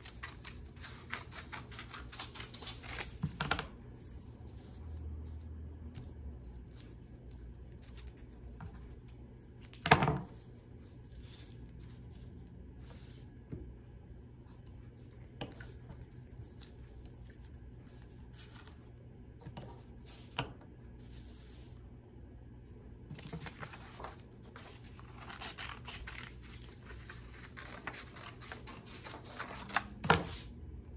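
Scissors snipping through paper in runs of quick cuts, densest at the start and again in the last several seconds, with paper rustling as the strips are handled. A single loud knock about ten seconds in.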